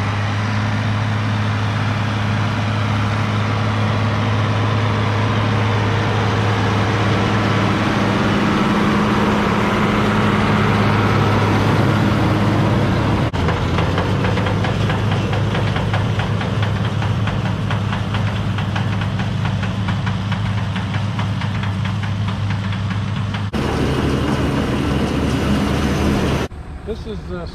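International 1086 tractor's six-cylinder diesel running steadily under load as it pulls a New Idea 486 round baler through the windrows. In the middle stretch a fast mechanical rattle from the working baler runs over the engine.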